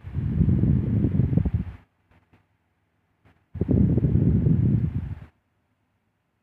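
Air from a small desk fan blowing onto the microphone, making low wind noise in two bursts of nearly two seconds each that start and stop abruptly.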